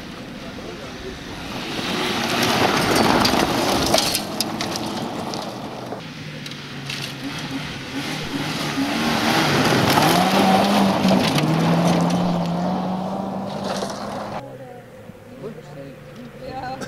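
Rally cars passing on a gravel stage, engines under hard throttle with tyre and gravel noise, in two loud passes that build and fade, the second with the engine note stepping up.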